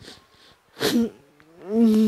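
A woman sobbing: a sharp, gasping sob just before a second in, then a drawn-out wailing cry that rises in pitch and holds near the end, the loudest part.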